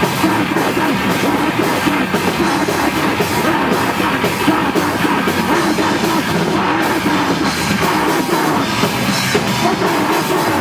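Hardcore punk band playing live, loud and without a break: distorted electric guitars over a drum kit.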